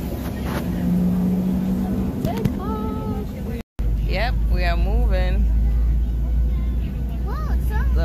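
Jet airliner cabin noise inside a Southwest Boeing 737 as it moves off for takeoff: a steady engine rumble, much deeper and stronger in the second half, with voices over it.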